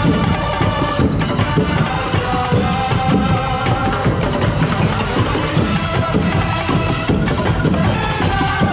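Festival percussion ensemble playing a dense, driving drum rhythm on bass and snare drums, with mallet keyboard instruments carrying a melody over it.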